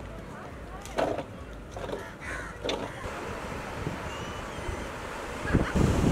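Beach ambience: a steady low rumble of wind and sea with distant people's voices and a few short calls about one to three seconds in. Near the end, wind buffeting the microphone and waves breaking at the waterline grow louder.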